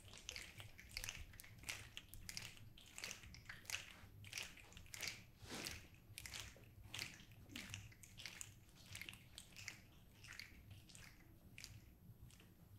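Many people snapping their fingers out of step, a scattered patter of sharp clicks imitating raindrops. The clicks thin out and fade near the end.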